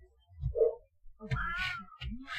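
A cat meowing: one wavering, drawn-out call in the second half, after a short, lower sound about half a second in.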